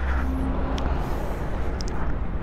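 Steady outdoor background noise, a low rumble under an even hiss, with a couple of faint high ticks.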